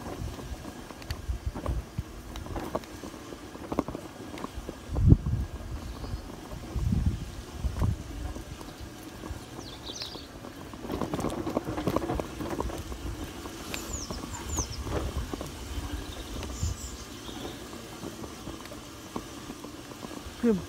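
Occasional low thumps and rustling, loudest about five seconds in. In the second half there are a few short, high chirps from small birds in the trees.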